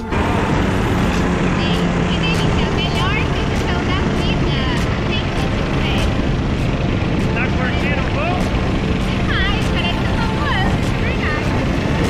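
Paratrike's engine and pusher propeller running at full power through the takeoff run and climb, with heavy wind noise on the microphone. Short high-pitched vocal sounds break through it here and there.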